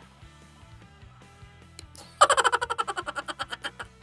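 Quiet background music, then about two seconds in a loud rapid run of short high pitched pulses, about a dozen a second: a sound effect marking the switch to sped-up playback.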